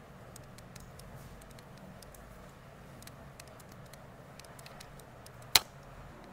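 Hair-cutting scissors snipping through wet hair: faint, crisp clicks scattered throughout, with one much louder sharp click about five and a half seconds in.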